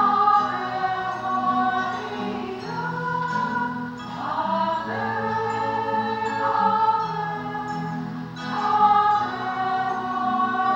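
A choir singing the closing hymn at the end of Mass, in long held notes over sustained low accompanying notes.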